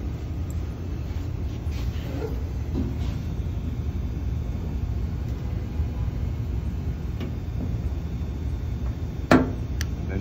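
Steady low workshop rumble. Near the end comes one sharp metallic snap as the spot-welding dent-repair gun, fitted with its rocking foot, is set against the bare steel of the car panel.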